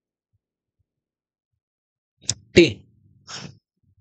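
Silence for about two seconds, then a man's voice saying a single letter, "T", with a short click just before it and a short breath sound soon after.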